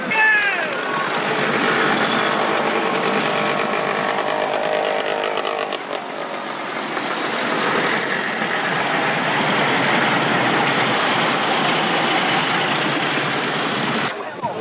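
Antique motorcycle engines running, with crowd voices mixed in.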